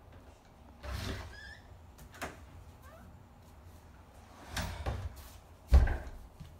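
A few sharp knocks and thumps indoors, the loudest near the end, with a brief high squeak about a second and a half in, over a low steady hum.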